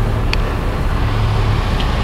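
Steady outdoor background rumble with a low hum, and a brief light click about a third of a second in.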